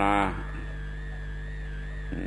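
A man's voice ends a word, then a pause filled with the old recording's steady low hum and hiss, with a faint, slightly wavering high whine running through it.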